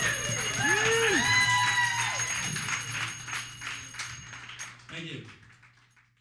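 Audience cheering at the end of a live klezmer tune: two long rising-and-falling "woo" calls near the start, then clapping that thins and fades out. A steady low hum from the PA runs underneath.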